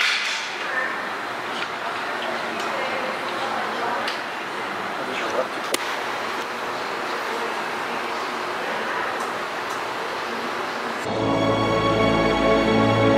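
Steady indoor room noise with indistinct background voices and a sharp click about six seconds in; music starts near the end.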